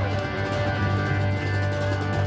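Live rock band playing a stretch with no singing: electric guitars over a steady low bass.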